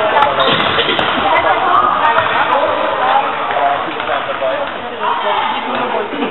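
Players and spectators shouting and calling in a reverberant sports hall, several voices overlapping, with a few sharp thuds of the football being kicked on the hall floor.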